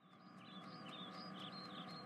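Faint birds chirping, a string of short high calls, fading in from silence at the start.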